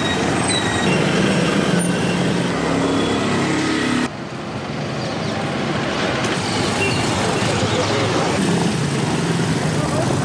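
Street sound of traffic, with people's voices mixed in. The sound drops suddenly about four seconds in, then builds back up.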